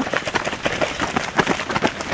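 Running footsteps of several runners going past: a quick, irregular patter of overlapping footfalls on the path.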